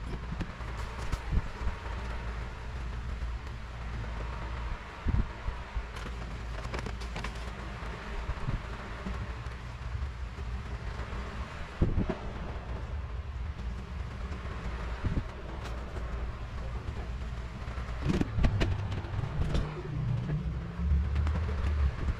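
A cloth pad rubbing over a vinyl sticker to press it onto a Sintra PVC foam board, with scattered clicks of handling, over a steady low rumble.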